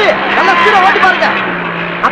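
Men's voices talking loudly, with wide swings in pitch, over a steady low hum.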